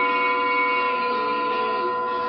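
Tibetan singing bowls ringing together: a dense chord of several steady, overlapping tones that hold without striking or fading.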